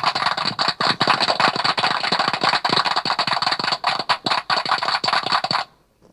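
Canned applause played from an effects device: dense clapping that cuts off abruptly about five and a half seconds in.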